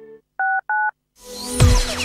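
Two short electronic beeps, each a pair of steady tones, about a third of a second apart. After a brief silence a radio station jingle swells in, with falling whooshing sweeps.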